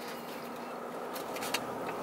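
Steady, quiet background hum inside a parked car's cabin during a pause in speech, with no distinct event.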